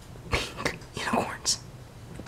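A person whispering a short phrase: breathy, unvoiced speech in several short bursts.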